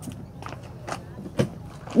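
A few soft footsteps, about half a second apart.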